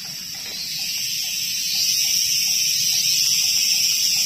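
Insects buzzing in a steady, high-pitched chorus that swells louder about two seconds in, with a faint short call repeating about three times a second underneath.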